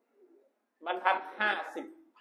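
A man's voice saying a few short syllables in a small, echoing room, after a brief near silence.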